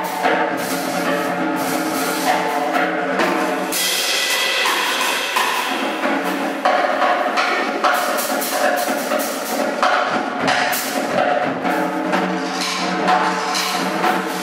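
Jazz trio playing: stage piano, double bass and drum kit, with the drums busy with cymbal and drum strokes over sustained pitched chords.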